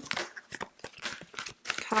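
Tarot cards being handled and shuffled by hand: a run of irregular light snaps and rustles as the cards slide and flick against each other.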